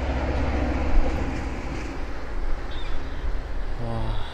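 Wind buffeting the microphone: a low rumble under a broad rushing hiss, strongest in the first second and then easing a little.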